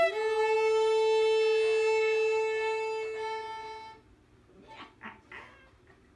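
Violin holding one long bowed note for about four seconds, which fades and stops; after it only a few faint, soft sounds remain.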